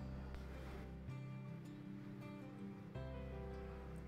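Soft background music with held notes that change about a second in and again near the end.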